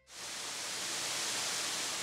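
Steady rush of hot spring water running into an open-air bath, fading in quickly at the start.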